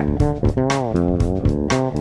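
Fretless electric bass played in a busy line of plucked notes, several of them sliding and bending smoothly in pitch rather than stepping between notes.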